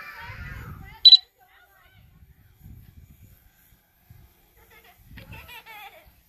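Faint voices of people outdoors, a short, loud, high-pitched sound about a second in, and several low rumbling gusts like wind on the microphone.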